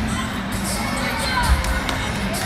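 Many children shouting and squealing over the hubbub of a crowded indoor play hall, with background music and a single low thump about one and a half seconds in.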